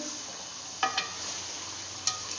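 Chicken pieces sizzling in hot oil in an aluminium pot, with two short knocks of the stirring spoon against the pot about a second in.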